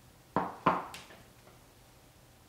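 Two quick knocks of a wooden spoon about a third of a second apart, with a faint third tap after, as salsa is spooned from the bowl onto a taco.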